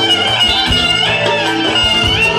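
Live band dance music, with electric guitar and keyboard playing a wavering melody over a steady low beat.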